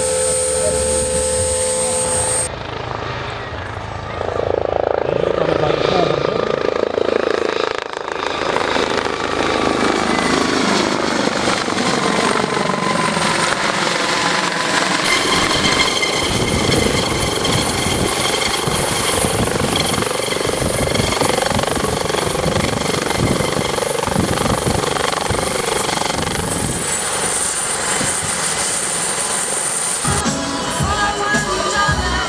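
Helicopters flying close by: rotor noise with a steady high turbine whine, cut together from several shots so that the sound changes abruptly a few times. In the second half a twin-engine Eurocopter AS 365 Dauphin hovers low, its rotor pulsing quickly under the whine.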